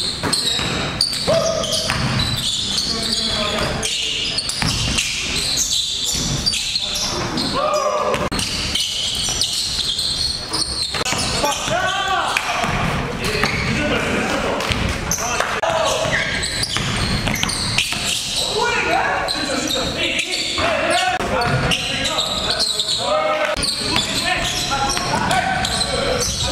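Basketball game sound: a ball bouncing repeatedly on a hardwood gym floor, mixed with players' shouts and calls.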